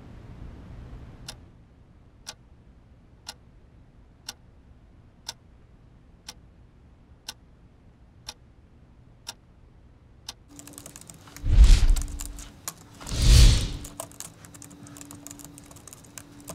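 A clock ticking once a second, ten ticks in all. Then rapid typing on a computer keyboard starts over a steady low hum, broken by two loud whooshes about a second and a half apart.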